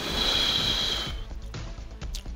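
A person's breath hissing for about a second, with a faint whistle in it, during a hit on a battery-powered cannabis vaporizer, over background music.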